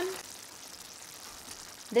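Squash, smoked fish and coconut milk cooking in a pan: a faint, steady sizzle. A woman's voice finishes a word just at the start and begins again at the very end.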